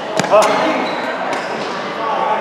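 Badminton rally ending: sharp racket-on-shuttlecock hits and footwork knocks on the court, two quick sharp hits about a quarter second apart near the start, with voices echoing in a large hall.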